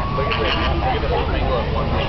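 A flock of flamingos and ducks calling: many short, overlapping honks and chatter over a steady low rumble.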